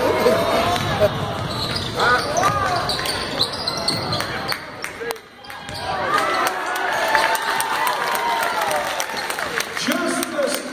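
A basketball dribbled on a hardwood gym floor, mixed with players' and spectators' voices echoing in the hall. The sound dips briefly about five seconds in.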